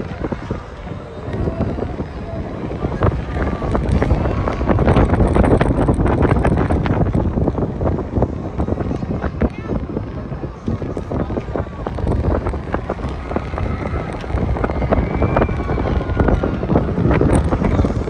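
Wind rushing and buffeting against the microphone of a rider on a swinging rocket ride, rising and falling and loudest a few seconds in, with scattered knocks and faint voices underneath.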